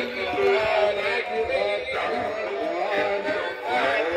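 Animated singing celebrity dolls playing a recorded song: a man singing over musical accompaniment.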